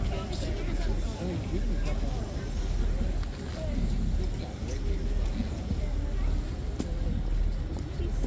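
Crowd murmuring and talking quietly in the open air over a steady low rumble, with a faint click or two.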